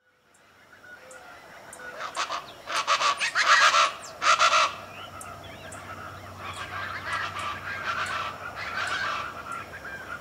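Plain chachalacas calling: a loud burst of harsh, rapidly repeated calls from about two seconds in until nearly five seconds, then quieter calls carrying on.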